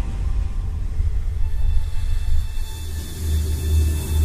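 Tense drama-score music: a loud, deep rumbling drone that swells slightly near the end, with faint held tones above it.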